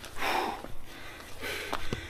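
A man breathing out hard: a short, noisy breath, then quieter breathing near the end. He is out of breath, which he puts down to the altitude.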